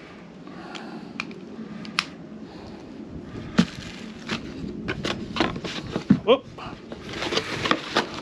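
Handling noises as a Kast King spinning reel and its packaging are picked up and put down: scattered light clicks and knocks with paper and plastic rustling, growing busier near the end with wind on the microphone.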